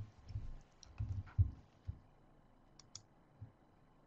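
Faint desk-handling sounds at a computer: a few dull low thumps in the first two seconds, then two quick sharp clicks just under three seconds in, like a mouse being clicked.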